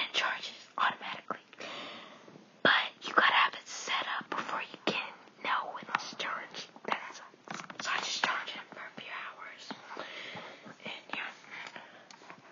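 A person whispering close to the microphone, with a few short clicks in between.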